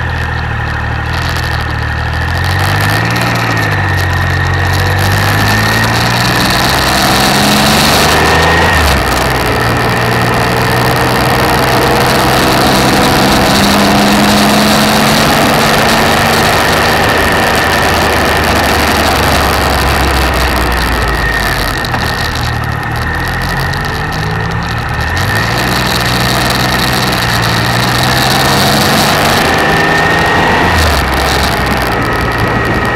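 Motorcycle engine pulling uphill, its note climbing and falling, with sharp drops about eight seconds in and again past twenty seconds. Heavy wind rush on the microphone runs under it.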